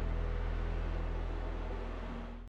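A steady low hum under faint hiss, slowly fading out.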